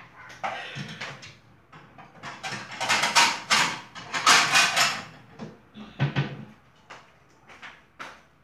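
A dog barking off-camera, in a run of sharp barks that come loudest in two bouts around the middle.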